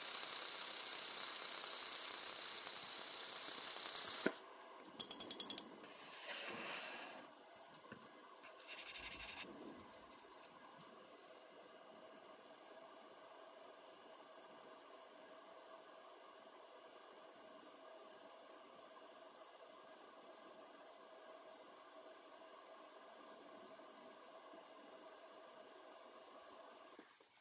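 X1 400 W semiconductor pulse laser welder working underwater, its torch tip on steel in a water tray: a steady high hiss for about four seconds that cuts off abruptly. A short burst of rapid clicks follows, then faint room tone.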